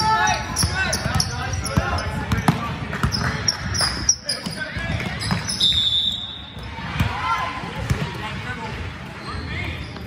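Basketball being dribbled on a hardwood gym floor, with sneakers squeaking and players and spectators calling out, all echoing in a large hall. A short, steady, high tone sounds about six seconds in.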